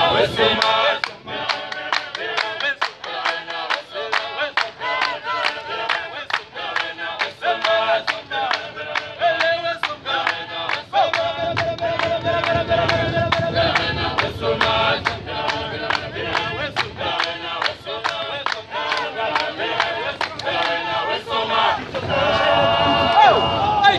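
A group of voices singing together, with steady rhythmic hand-clapping keeping the beat.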